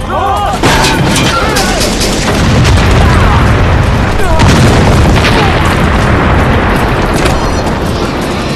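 Staged explosion in a film soundtrack: loud, continuous booming and rumbling with repeated sharp cracks, men yelling near the start, and dramatic music underneath.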